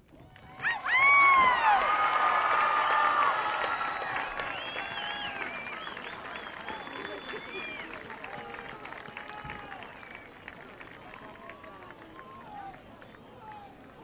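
Large crowd cheering, whooping and shouting over applause. It breaks out suddenly about a second in, is loudest over the next couple of seconds, then slowly dies down.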